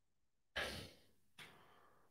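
A man's short breathy sigh into a close microphone about half a second in, followed by a faint brief breath.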